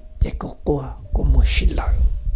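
Speech: a voice narrating softly, close and whispery, with a low rumble underneath from about a second in.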